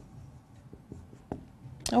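A few light clicks and taps, roughly half a second apart, in a quiet small room. A woman's voice starts just at the end.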